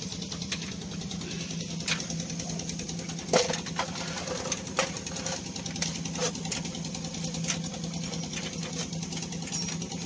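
A steady machine hum with a fast, even pulse runs throughout, with a few sharp metallic clinks of hand tools against the truck's radiator mounting.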